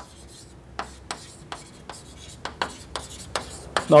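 Chalk writing on a blackboard: a string of short, irregular scratches and taps, starting about a second in.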